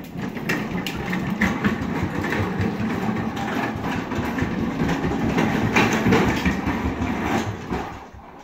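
Hard plastic wheels of a Little Tikes Cozy Coupe ride-on car rolling over tile and wood floors, a continuous rattle that stops at the end.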